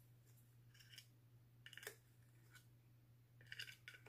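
Near silence: a steady low hum with a few faint, light clicks and taps of wooden coloured pencils being handled.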